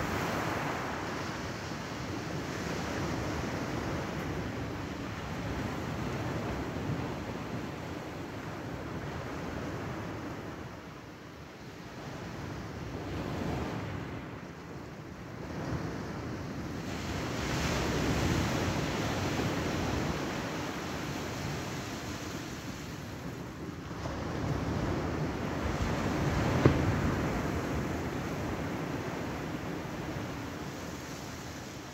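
Small waves washing onto the shore, with wind buffeting the microphone. It is a steady rush that swells and eases every several seconds, with one sharp knock near the end.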